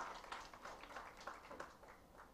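Faint, scattered clapping from an audience, thinning out and dying away near the end.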